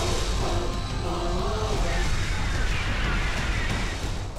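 Jet flyby sound effect for cartoon air-show jets: a steady rushing engine noise, with background music underneath.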